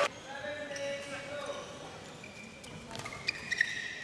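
Badminton rally on an indoor court: shoes squeaking on the court surface, with sharp racket-on-shuttlecock hits in the last second, the loudest near the end. Faint voices early on.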